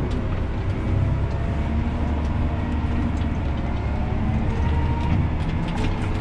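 John Deere 7R 290 tractor's diesel engine running steadily as the tractor drives, heard from inside the cab as a low, even rumble.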